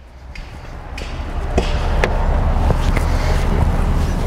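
Wind rumbling on the camera microphone, building over the first second or two and then holding steady, with a few light clicks and knocks.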